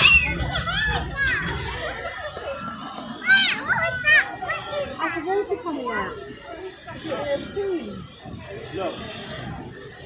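Young children's voices and chatter with adults talking, including two high excited squeals about three and four seconds in.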